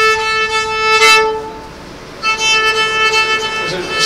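Violin playing two long, held bowed notes, with a short break about halfway through.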